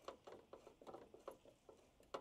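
Faint, irregular clicks and scratches of a screwdriver turning the headlight aim adjuster in the engine bay of a 2019+ Ram pickup, raising or lowering the low beam.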